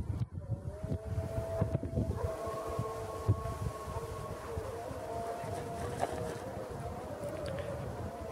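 Wind buffeting the microphone with a low rumble, under a steady, slightly wavering whine of several held tones that begins about half a second in.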